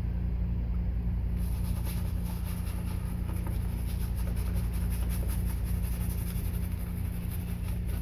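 Shaving brush swirling lather against stubbly skin in quick repeated strokes, over a steady low hum.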